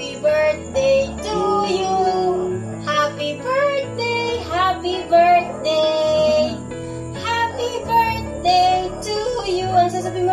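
Background music: a song with a high, child-like singing voice over a steady instrumental backing.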